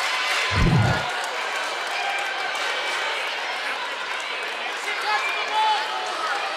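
Gymnasium crowd of fans talking and calling out during a stoppage in play, with a single low thump about half a second in.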